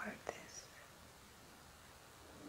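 A single softly whispered word, then near silence: faint room tone.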